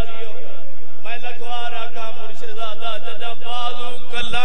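A man's amplified voice chanting a zakir's melodic majlis recitation through a microphone: a phrase trails off, and about a second in a new long line begins, its held notes wavering. A steady low electrical hum from the sound system runs underneath.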